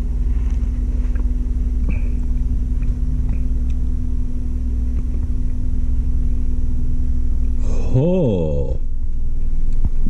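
Steady low rumble with a constant hum. About eight seconds in, a man makes a short vocal sound whose pitch bends up and down, just after downing a shot of cinnamon-bear-soaked whiskey.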